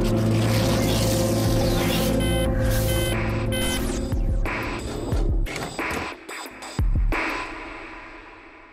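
Ride-film soundtrack over cinema speakers: music with a steady low drone, three short electronic beeps a little past two seconds in, then several sharp heavy hits, the sound fading near the end.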